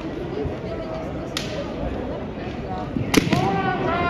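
Two sharp cracks of bamboo shinai striking in a kendo bout, one about a second and a half in and a louder one near the end. The second is followed at once by a long kiai shout.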